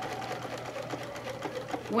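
Electric sewing machine running steadily, the needle stitching rapidly through a quilt's binding and batting with an even fast ticking over a low motor hum.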